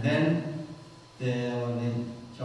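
Speech only: a man speaking at a microphone, in two drawn-out phrases with long syllables held at a nearly even pitch.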